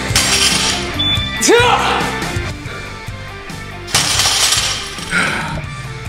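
Background music with a beat, over which a loaded barbell clatters down with a crash of metal plates at the start and again about four seconds in. A man gives a short strained cry about a second and a half in.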